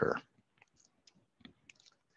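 A spoken word trails off, then a handful of faint, irregular clicks.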